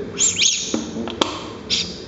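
A knife scraping through solid ghee against a plastic food container, giving short high squeaks, with one sharp click a little after a second in.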